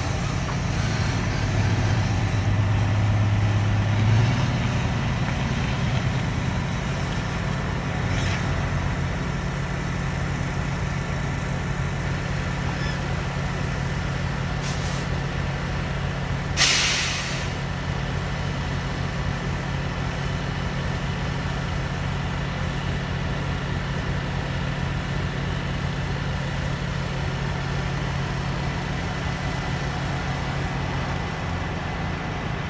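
Semi-truck tractor's diesel engine running as the truck pulls forward, then idling steadily. About halfway through, a short faint hiss and then a loud, sharp air-brake hiss that dies away over about a second, as the parking brake is set.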